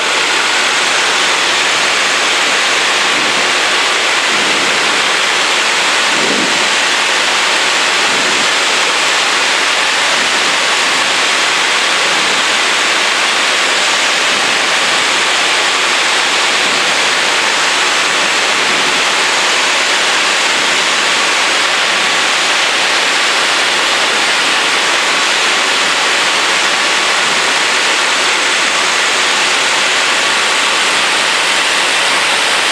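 Steady rush of wind over a camera mounted outside on the wing of a small propeller aircraft in flight, with a faint steady hum of the engine and propeller beneath it.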